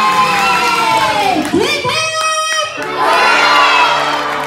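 A group of children cheering and shouting together, with one long falling cry early on and a held high shout near the middle.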